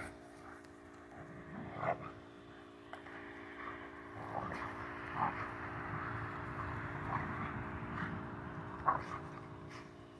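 Old English Sheepdogs play-fighting on grass: quiet scuffling with a few short, sharp dog noises, over a steady low hum.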